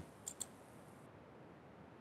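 Two light computer keyboard keystrokes in quick succession, faint against near silence.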